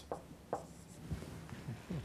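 A few faint strokes of a marker pen on a whiteboard.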